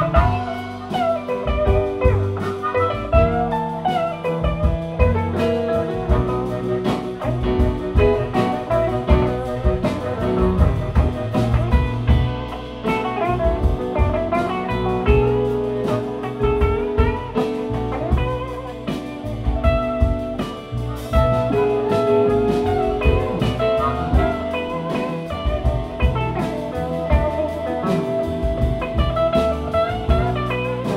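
Live blues band playing an instrumental break in a slow minor-key blues, with drum kit, upright bass, keyboard and electric guitar, and a harmonica played with cupped hands over the band.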